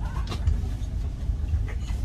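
Steady low rumble inside a first-class railway sleeper coach.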